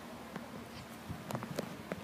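Quiet handling noise from ukuleles being held and fingered: a few faint, short clicks and taps, with no strumming or ringing chords.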